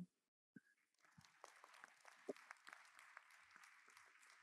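Very faint, scattered audience applause.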